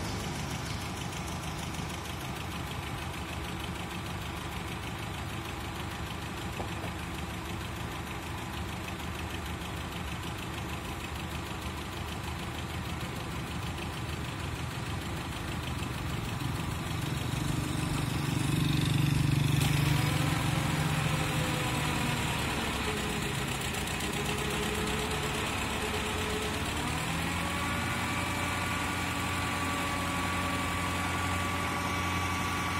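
Isuzu boom-lift truck's engine running steadily while the hydraulic boom is worked, swelling louder about two-thirds of the way through. Near the end a whine rises in pitch and then holds steady.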